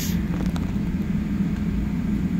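A steady low machine hum that does not change.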